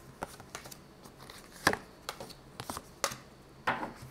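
Tarot cards being handled and drawn from the deck: a few short, sharp card flicks and snaps, the loudest a little under two seconds in and about three seconds in.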